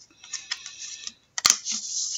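Trading cards being handled and slid against one another, a crackly rustle with a sharp click about one and a half seconds in.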